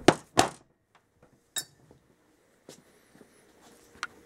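Small-engine flywheel set down on a workbench: two sharp knocks close together, then a short ringing metallic clink about a second and a half in and a faint knock after it.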